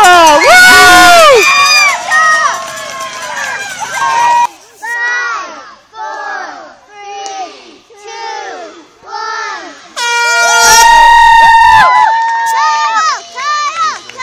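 Spectators shouting and cheering. About ten seconds in comes a loud horn blast lasting about two seconds, the start signal for a swim heat.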